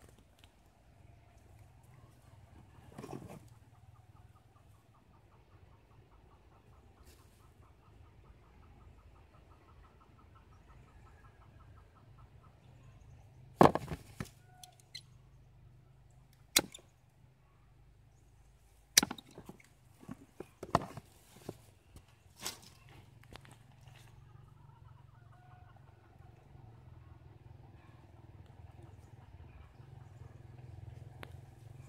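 A cluster of sharp clicks and snaps, about five loud ones through the middle of the stretch, from a blade cutting into guava wood while grafting. Under them runs a faint steady low hum.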